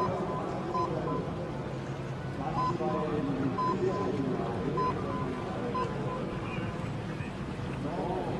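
A string of short, high electronic beeps, about eight or nine spread across a few seconds: a finish-line signal sounding as each kayak crosses the line. A commentator's voice runs underneath.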